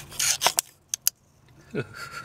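Hands working in a plastic steering-wheel hub: a brief scraping rustle, then two light, sharp clicks close together about a second in.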